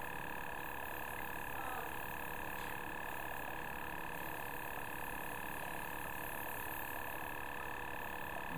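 Small electric airbrush-makeup compressor (Luminess Air system) running steadily, a constant whine of several tones with a faint hiss of air from the handheld airbrush as makeup is sprayed on the face.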